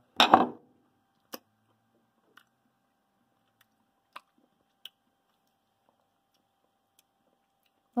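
A man tasting honey from a spoon: a few faint, scattered mouth clicks and smacks in a mostly quiet room, over a faint steady tone. It opens with a short, loud word that ends a spoken count.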